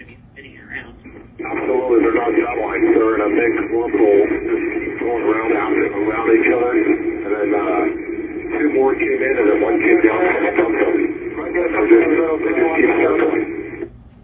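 Air traffic control radio transmission: a voice coming through a narrow, crackly aircraft radio channel, keyed on about a second and a half in and cut off sharply just before the end.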